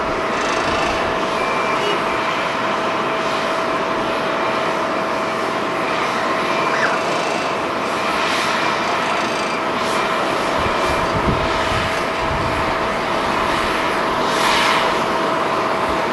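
Steady jet engine noise of a Skymark Airlines Boeing 737-800 as it lands and rolls out on the runway, with a thin steady whine running through it.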